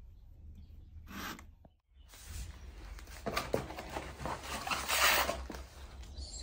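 Rustling and scraping of plastic wrapping and cardboard packaging being handled, growing louder toward the end. The sound cuts out for a moment about two seconds in.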